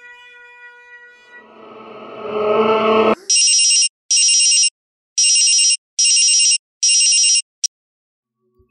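A held music drone swells into a loud rising rush that cuts off abruptly about three seconds in. Then a mobile phone rings: five short electronic rings grouped roughly in pairs, with a sixth cut short near the end as the call is answered.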